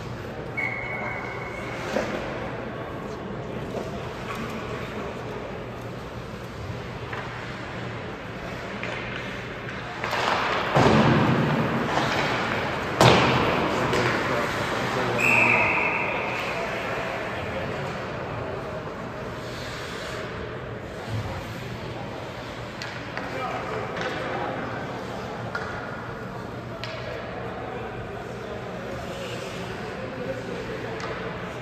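Ice hockey game in an arena: sharp knocks of puck and sticks, the loudest a bang about 13 s in, like a puck hitting the boards. About 15 s in comes a short, high whistle blast, a referee's whistle stopping play. Spectators talk throughout.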